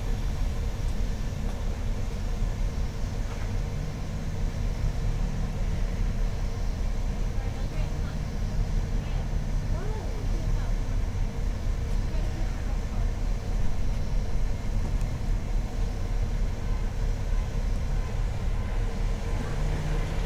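City transit bus engine idling with a steady low rumble while the bus stands stuck in snow.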